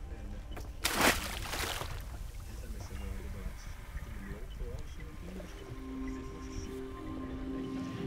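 A short splash about a second in as a small ROV drops into the sea, over a low rumble of wind and boat noise. Soft background music comes in later.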